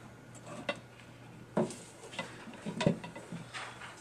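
Light wooden clicks and knocks, four or five spread over a few seconds with the loudest about three seconds in, as a wooden tapestry needle is passed through the warp of a wooden frame loom. A faint steady low hum runs underneath.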